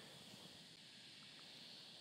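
Near silence: faint outdoor background hiss.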